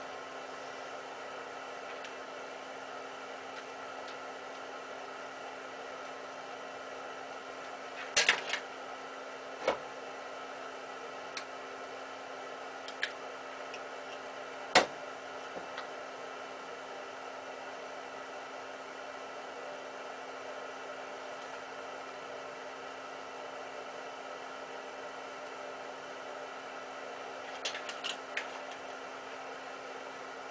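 Steady machine hum with a handful of short, sharp clicks and taps from small parts being handled on a light fixture: a quick cluster about 8 seconds in, single clicks over the next several seconds with the loudest about 15 seconds in, and a few more near the end.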